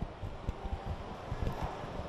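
Steady background noise of a large indoor hall, with a few soft low thuds in the second half.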